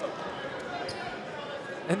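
A basketball being dribbled on a hardwood court, faint knocks under the steady murmur of a gym crowd.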